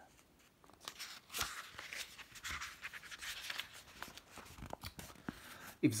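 Pages of a paperback book rustling and crinkling as they are handled and turned, with many small irregular clicks of paper for several seconds.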